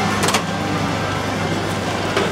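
Steady low hum of a running motor vehicle amid street noise, with a couple of short clicks just after the start.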